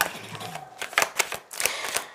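Tarot cards being shuffled and handled in the hand: an irregular string of light clicks and snaps from the card edges, about eight over two seconds.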